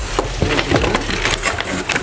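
Cardboard box and packaging scraping and rustling, with irregular knocks, as a car headlight unit is lifted out of it.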